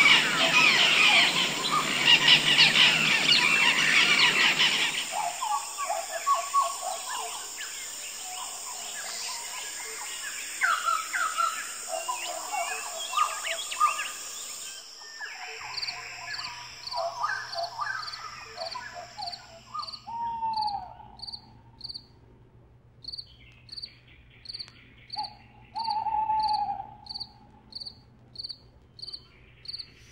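Outdoor nature soundtrack: a loud, dense hiss full of bird calls for the first five seconds, then scattered bird chirps. From about halfway a cricket chirps in a steady rhythm, a little more than once a second, with two falling bird calls over it.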